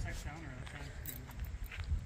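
Faint, indistinct voices talking in the background over a low, uneven rumbling noise.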